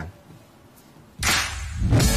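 A quiet second, then a sharp whoosh sound effect cuts in suddenly and fades into the start of music: a TV broadcast transition going into a commercial break.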